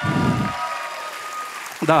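An audience applauding in a large hall, fading gradually toward the end.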